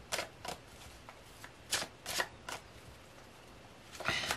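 Tarot cards being handled on a wooden table: about half a dozen short, irregularly spaced card swishes and taps. The loudest come a little before the middle.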